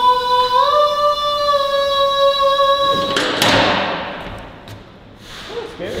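A single voice singing one long held note, stepping up slightly in pitch about half a second in, with a hollow, echoing ring. The note breaks off about three seconds in and gives way to a loud burst of noise that fades over a second or so.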